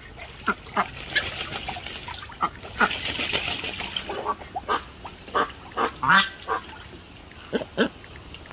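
Muscovy duck bathing in a plastic wading pool, splashing and shaking its wings in the water for a few seconds starting about a second in. Short duck calls come at intervals throughout.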